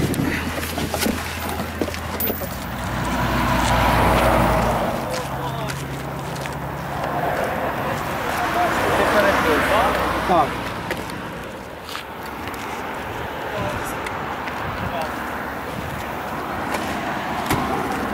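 Indistinct voices with a steady low hum of an idling car engine that stops about five seconds in.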